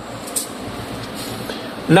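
Steady background noise with no distinct event: room tone, with a brief faint hiss about half a second in, and a man's voice starting right at the end.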